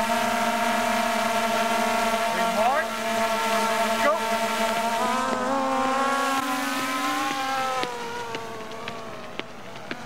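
Quadcopter drone hovering close by, its propellers giving a steady buzz of several tones at once; the pitch shifts slightly in the middle, and the buzz cuts off about eight seconds in, leaving a quieter background with a few sharp clicks.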